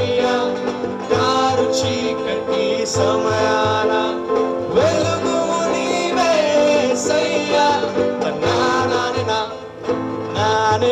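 A live choir song: lead and backing singers over keyboard and strummed acoustic guitar, with a steady hand-drum beat underneath.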